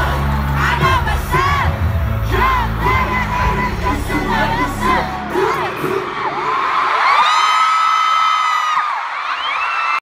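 Arena crowd screaming and cheering over loud concert music with a heavy bass beat. The music cuts out about halfway through, and the high-pitched screaming carries on, with one long held scream standing out near the end.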